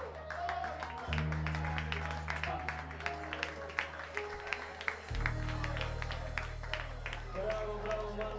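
Karaoke backing track playing, its sustained bass notes changing about a second in and again about five seconds in, under scattered clapping and crowd voices.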